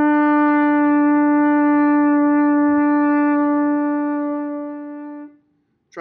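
French horn holding one long, steady written A, fingered with the thumb and first and second valves. The note fades over its last second or two and stops about five and a half seconds in.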